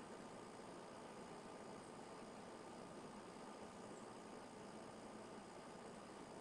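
Near silence: a steady faint hiss of room tone.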